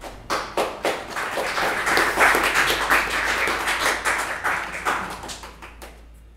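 Audience applauding. A few separate claps build quickly into full applause, which then tapers off near the end.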